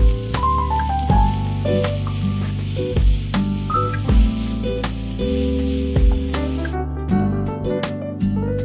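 Julienned carrots sizzling as they are stir-fried in a frying pan, heard under background music with a steady beat. The hiss of the frying cuts off about seven seconds in.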